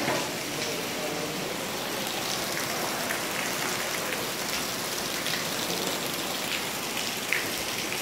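Steady rain falling, an even hiss with scattered faint drop ticks.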